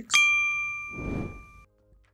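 A single bright bell ding, the notification-bell sound effect of a subscribe-button animation, ringing for about a second and a half before it stops. A soft rushing swell rises under it about a second in.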